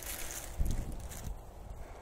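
Wind rumbling on the microphone over faint outdoor background noise.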